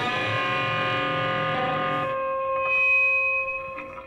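Electric guitar, a Telecaster-style solid-body: a note struck at the start and left to ring, fading away over the last second or so.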